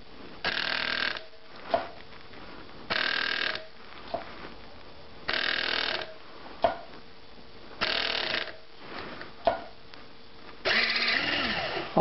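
A semi-automated capper-decapper's motor runs in five short bursts of under a second each. The chuck spins on the tube cap because the torque is set wrong, and there is a sharp click between bursts.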